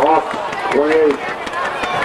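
Football crowd noise right after a touchdown, with a voice shouting one drawn-out call about a second in.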